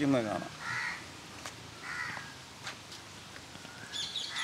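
Two short, faint bird calls about a second and a half apart, after a man's voice trails off at the start.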